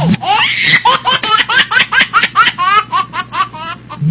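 High-pitched laughter: a quick, continuous run of short laughing bursts, rising and falling in pitch, with a faint steady hum underneath.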